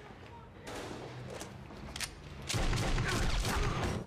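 Several gunshots from a TV drama's soundtrack, sharp single shots spread over about two seconds, followed by a louder low rumble.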